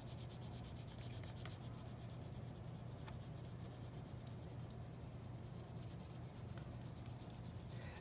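Black oil pastel rubbed back and forth on paper in quick short shading strokes: a faint, steady, scratchy rubbing.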